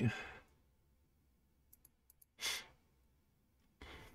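A man's short sigh, one breathy exhale a little past halfway, after a few faint clicks.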